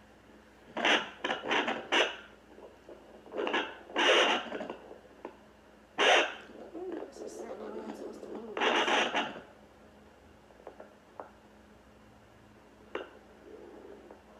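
Handheld home fetal Doppler's speaker giving loud scratchy bursts of noise as the probe is moved over the gelled belly, in several clusters over the first ten seconds, then one click near the end.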